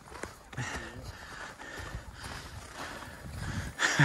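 Footsteps on packed snow and a person's breathing while walking uphill, with a faint distant voice about half a second in and a brief louder rush of noise just before the end.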